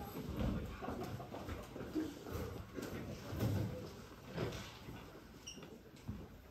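Quiet stage transition in a small theatre: faint scattered footsteps and shuffling as performers move off stage, with a little audience rustle and no music.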